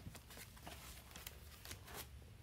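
Near silence with faint, scattered light clicks and rustles of handling.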